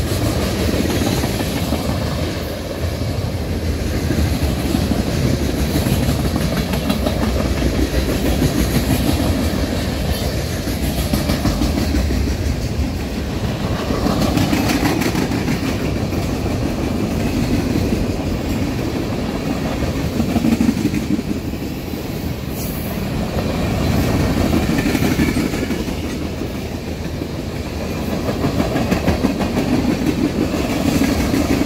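Freight train cars (tank cars and covered hoppers) rolling past close by: a steady rumble of steel wheels with clickety-clack over the rail joints, swelling and easing every few seconds, with one sharper clank about twenty seconds in.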